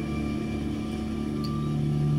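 Background film score of soft, sustained low notes held steady, growing a little louder toward the end.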